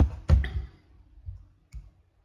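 A few sharp clicks close to the microphone: two at the very start about a third of a second apart, then a fainter one near the end.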